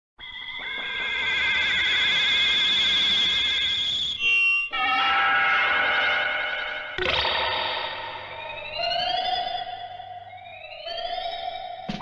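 Warbling electronic sci-fi tones. After a brief break about four seconds in they return, and from about seven seconds in a series of rising electronic sweeps plays over a steady lower tone.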